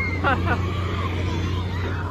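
Crowd babble of many people talking at once, over a steady low machine hum.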